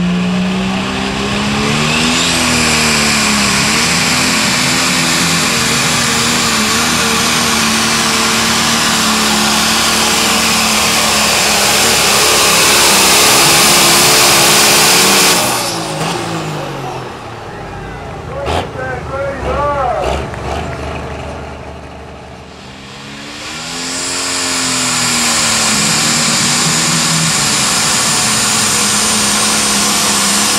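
Turbocharged diesel pulling tractor at full throttle dragging a sled, engine pitch wavering under load with a high whine over it, cutting off abruptly about halfway through. After a quieter stretch, a second pulling tractor revs up, rising in pitch, and runs loud at full throttle to the end.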